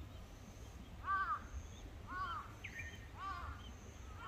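A crow cawing three times, about a second apart.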